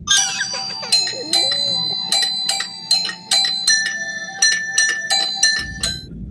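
Bell-like chime notes struck one after another in a quick tune, about two to three a second, each note ringing on. In the first second or so, a young child's wailing cry wavers underneath.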